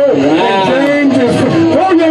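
A person's voice, continuous.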